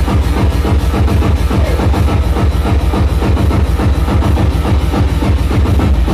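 Loud electronic dance music from a DJ set, driven by a steady, evenly repeating kick drum.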